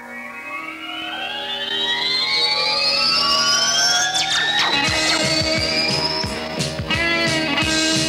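A live band's instrumental song intro. A slow, rising effects-laden sweep climbs over held notes for the first few seconds, then percussion and the rest of the band come in about five seconds in.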